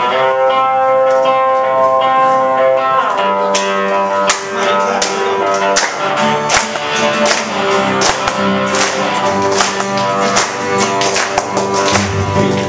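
Live worship band playing a song intro on guitar and keyboard. It opens on sustained chords, and drums come in with a steady beat about three and a half seconds in.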